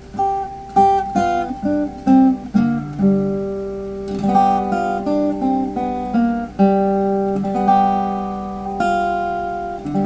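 Archtop acoustic guitar fingerpicked in standard tuning: a blues phrase of single notes picked over a held G chord, ringing out over a sustained low note. The notes come about every half second, with some left to ring for a second or more.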